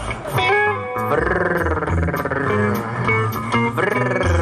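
A live band plays a bluesy guitar riff, with notes that slide and waver in pitch.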